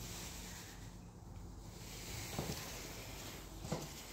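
Quiet room tone with a faint low steady hum, broken by a couple of soft thumps of footsteps on a hardwood floor.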